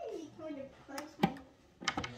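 A child's voice mumbling briefly, then three sharp clicks as a plastic toy is worked or cut free from its packaging.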